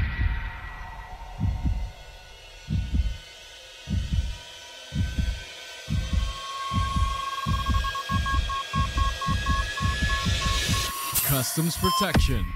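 Dramatic TV-promo sound design: deep heartbeat-like thuds, spaced apart at first and then quickening to about three a second. About halfway in a thin electronic tone enters and breaks into a run of short, even beeps, and a sudden burst of noise comes near the end.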